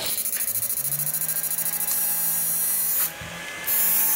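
Electronic fish-shocker inverter (a 10-FET V2 board) running on test after a broken potentiometer was replaced, giving a high hissing buzz. The buzz pulses rapidly at first, then runs steadier, cuts out for about half a second just after three seconds in and comes back louder.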